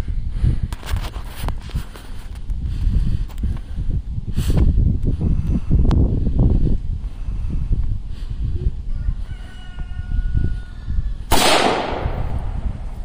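Rifle firing .223 rounds: a loud shot near the end and a lighter sharp crack about four seconds in. Wind rumbles on the microphone throughout.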